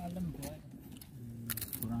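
People talking, one voice holding a low hum, with a brief rattling clatter about a second and a half in.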